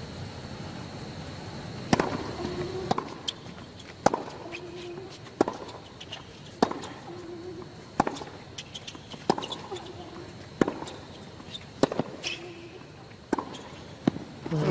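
Tennis racquets striking the ball back and forth in a baseline rally on a hard court, a crisp shot about every second and a quarter, beginning with the serve about two seconds in.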